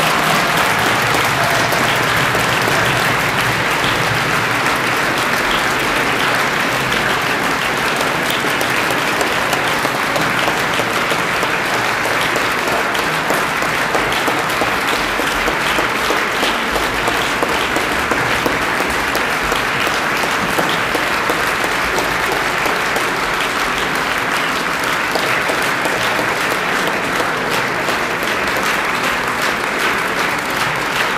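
Steady audience applause in a concert hall, dense and even throughout.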